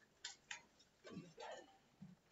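Faint clicks of a stylus tapping a tablet screen as it writes, heard over near silence.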